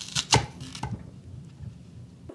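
Small kitchen knife cutting through a whole apple and knocking on a wooden cutting board, a few short, crisp cuts with the loudest about a third of a second in.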